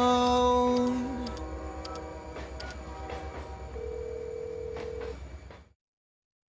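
Telephone tones from a payphone handset: a steady tone at the start, a few sharp clicks, then another steady tone about four seconds in. A low rumble runs underneath, and all of it fades out shortly before the end.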